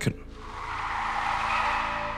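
Sound effect of a car skidding: a rushing noise of tyres sliding that starts a moment in and slowly grows louder.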